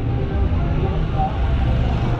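Street ambience: a steady low rumble of traffic with people's voices in passing.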